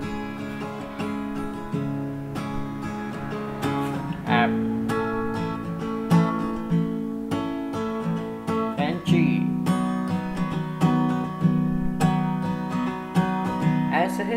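Steel-string acoustic guitar, capoed, strummed in a steady down-and-up pattern through a C, Am, F, G chord progression, the chord changing about every four to five seconds.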